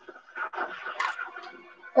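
Movie soundtrack playing from a TV in the room during a fight scene: a faint, irregular jumble of action sounds.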